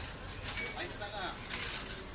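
Indistinct low voices and shuffling movement. A short, sharp, hissing scrape near the end is the loudest sound.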